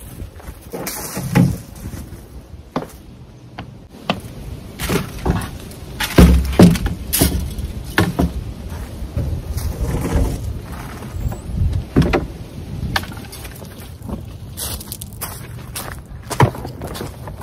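Knocks, thuds and rustling as a plastic leaf rake and a collapsible fabric leaf bag are pulled out of a wooden garden shed and its double doors are swung shut, with footsteps on gravel. The thuds are loudest about six to seven seconds in.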